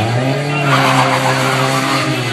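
A car drifting: its engine held at steady high revs while the tyres skid and squeal, the tyre noise loudest in the middle.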